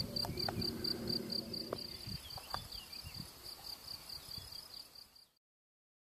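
A cricket chirping in even high pulses, about five a second, with a few faint clicks, fading out and stopping a little after five seconds in.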